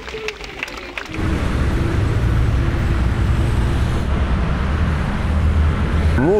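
Scattered hand clapping for about a second, then a loud, steady low rumble of city street traffic.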